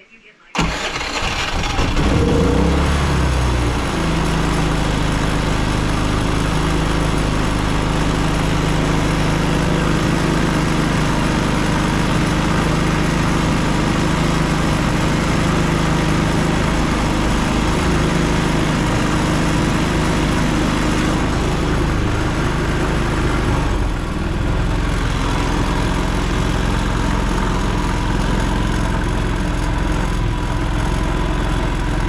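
Predator 3500 inverter generator's single-cylinder engine starting about half a second in. It catches, its pitch wanders for a few seconds, then it settles into a steady run with its side cover off. The engine note shifts about 24 seconds in.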